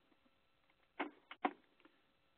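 Three brief faint keyboard clicks between about one and one and a half seconds in, as a command is entered at the keyboard; otherwise quiet room tone.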